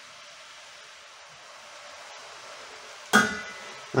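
Faint steady hiss of chopped mushrooms cooking gently in butter in a stainless steel pot. About three seconds in comes a sharp metallic clink with a brief ring, as the pot's steel lid is picked up.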